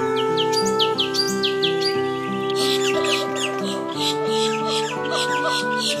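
Cungkok bird (a leafbird) chirping over steady background music: a run of quick downward-sweeping chirps in the first two seconds, then rapid, dense twittering from about halfway through.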